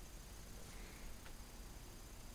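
Faint crackles over a steady low hum from the loudspeaker of a vintage Sentinel 400TV tube television, brought up slowly on a variac to about 75 volts: the first sign of life from its audio circuit.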